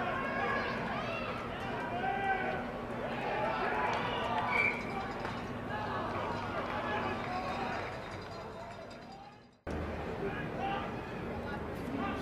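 Many overlapping shouting voices of rugby players and onlookers around a maul and scrum, with no single voice standing out. The sound fades away over about a second and a half to near silence, then cuts straight back in to the same kind of shouting.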